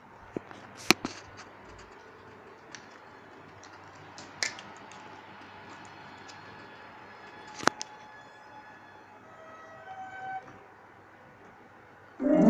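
Quiet room tone broken by a handful of sharp clicks and knocks from a phone being handled by hand, the loudest about a second in; a few faint short tones sound later on.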